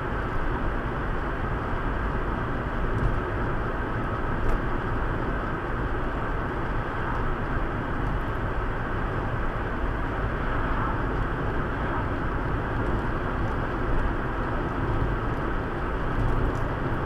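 Steady road noise heard inside a moving car: tyres running on coarse asphalt together with the engine at cruising speed, an even rumble with no change.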